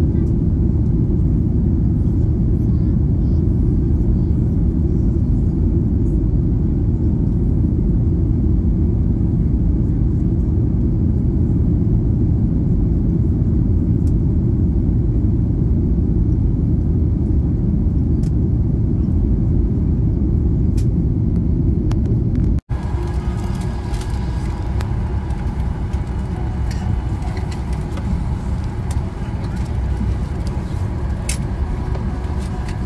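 Steady, loud low roar of a Boeing 737-8's engines and airflow heard from inside the cabin during the climb-out. About two-thirds of the way through it cuts to a lighter, less bass-heavy cabin hum with faint indistinct sounds over it.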